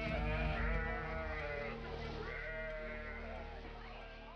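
Sheep bleating several times, each a wavering call, as the sound fades out toward the end.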